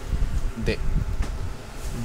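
A low, steady buzzing hum in the background, with one short spoken syllable about two-thirds of a second in.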